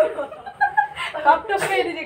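People talking, with chuckling laughter.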